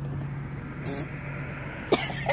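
Steady low drone of a car on the move, heard from inside the cabin, with a sharp knock just before the end.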